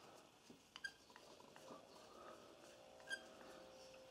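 Near silence, with a few faint clicks of a metal carburetor and screwdriver being handled, about a second in and again about three seconds in.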